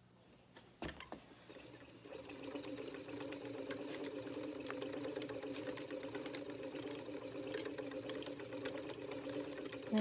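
Wooden spinning wheel being treadled: a light knock about a second in, then the flyer and bobbin build up to a steady whir that holds, as wool is spun short draw.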